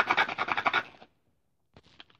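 Plastic blister packaging being worked open by hand: a quick, rapid rasping scrape for about a second, which stops abruptly, then a few faint clicks near the end.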